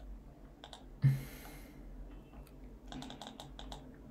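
Computer keyboard typing and mouse clicks: a few clicks early, then a quick run of key clicks in the last second or so. There is a brief louder breath-like noise about a second in.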